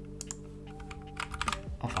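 Typing on a computer keyboard: a few quick key clicks just after the start, then a longer run of keystrokes through the middle.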